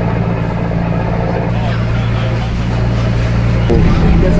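Outrigger bangka boat's engine running steadily under way, heard on board as a constant low hum. The sound changes abruptly near the end.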